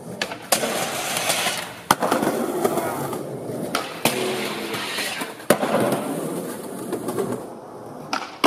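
Skateboard trucks grinding down a metal handrail in repeated tries. About four sharp clacks, as the board snaps onto the rail or hits the ground, each followed by a second or two of grinding hiss.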